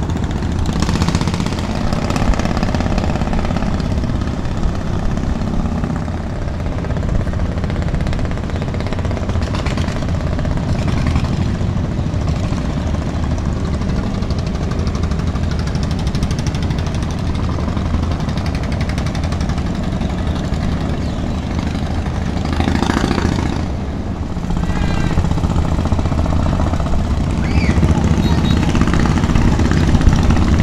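A boat engine running steadily with a low, even hum and no change in speed.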